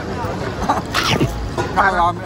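A person's voice: a sudden breathy exclamation about halfway through, then voiced sounds near the end, over steady street-market background noise.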